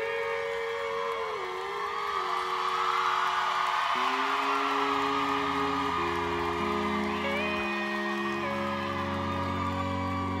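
Country band's instrumental intro: a pedal steel guitar holds long notes that slide from one chord to the next over strummed acoustic guitar, with low notes joining about halfway through.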